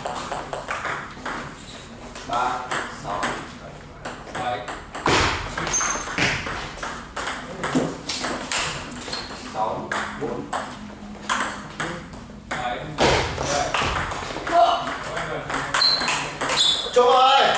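Table tennis ball being hit back and forth with rubber-faced bats and bouncing on the table during rallies: a run of sharp, hollow clicks.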